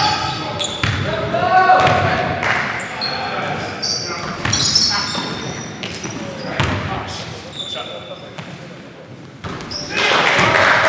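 Live men's pickup-league basketball play in a gym: the ball bouncing on the hardwood court, short high sneaker squeaks, and players calling out, all echoing in the hall. Things quiet down a little near the end.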